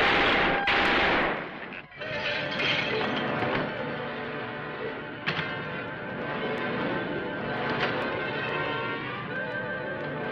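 Dramatic film-score music on an old monster-movie soundtrack, opening with a loud burst of noise that lasts about a second and drops away near the two-second mark. The music then runs on steadily, with a sharp crack about five seconds in.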